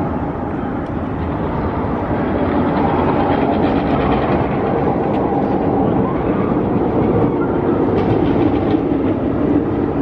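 A Giovanola hyper coaster train rumbling along its steel track as it runs through the helix. The rumble is steady and grows a little louder after the first couple of seconds.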